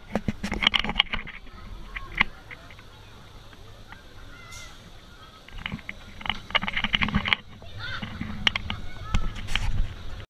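Junior roller coaster car clattering and knocking on its track as it rolls slowly at the end of the ride, in several bursts of rapid clicks over a low rumble, with a few short squeaky high tones between them.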